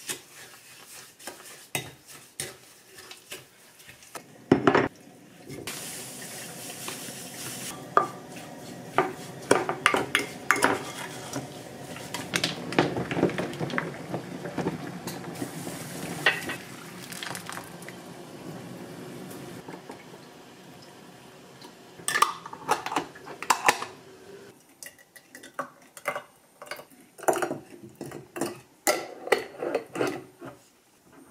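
A wooden spatula stirring and scraping strawberries in a glass bowl, with repeated clinks and knocks of glassware and dishes. There are louder knocks about four seconds in and again past the twenty-second mark.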